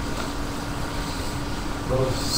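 Steady room noise: an even hiss and low hum with a faint steady tone, without words.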